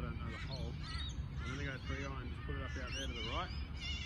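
Birds calling over and over, a string of short, harsh calls that rise and fall in pitch, over a steady low rumble.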